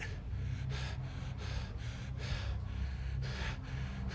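A man breathing heavily in short, quick breaths close to the microphone, over a steady low hum.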